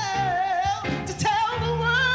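A group of singers performing with microphones: a lead voice sings long, wavering notes over a steady low accompaniment.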